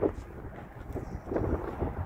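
Wind buffeting the microphone: a rough, uneven low rumble.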